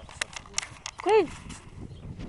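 A tiger cub gives one short call about a second in, its pitch rising and falling, amid knocks and scuffling from the cubs and the handheld camera.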